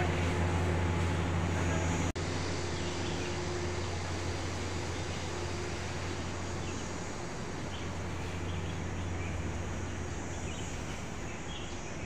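Outdoor city park ambience: a steady low hum, with faint high chirps toward the end. The sound drops out for an instant about two seconds in, and the hum is softer afterwards.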